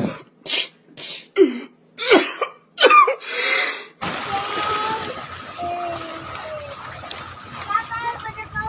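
A man sobbing and wailing in short, broken bursts of voice with gliding pitch. About four seconds in it cuts abruptly to a steady wash of sea water.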